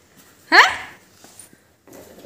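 A dog giving a single short yelp about half a second in, rising sharply in pitch and then fading.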